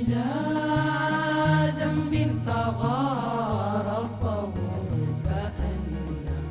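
Young male vocal group singing an Arabic nasheed together, holding long notes and bending one in a wavering ornament about halfway through. Underneath, an electronic keyboard plays accompaniment with a bass line that steps from note to note.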